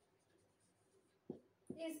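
Whiteboard marker writing on a whiteboard, faint scratching strokes, with a short tap about a second and a quarter in.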